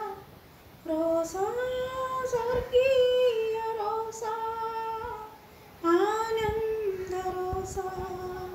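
A woman singing a Christian devotional song solo and unaccompanied, in long held notes, pausing briefly for breath about a second in and again near six seconds.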